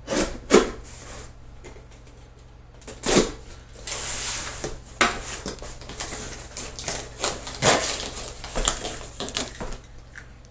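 Long cardboard shipping box handled on a wooden tabletop: two sharp knocks just after the start and another about three seconds in, a stretch of cardboard scraping across the wood, then a run of smaller taps and rustles as it is turned and shifted.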